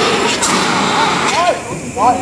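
Hand-held dry powder fire extinguisher discharging in a loud hiss that dies away about half a second in, with a shorter burst near one second, while a crowd talks.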